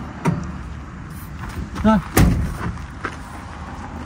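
Rear door of a Transit van swung shut with one loud bang about two seconds in, with a few lighter clicks of the handle and latch before it.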